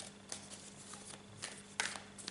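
A deck of tarot cards being shuffled by hand: soft, quick rustling and ticking of card against card, with a sharper snap near the end.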